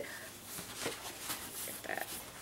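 Quiet handling sounds at a table: faint rustling and a few light taps as hands move over the table surface and pick up a paper towel.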